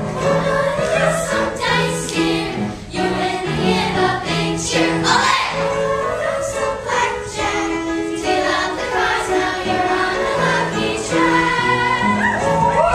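A group of girls singing a stage-musical number together, with instrumental accompaniment.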